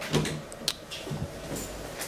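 Platform lift's door mechanism clicking and clunking: a loud clunk just after the start and a sharp click about two-thirds of a second in, over a low steady hum.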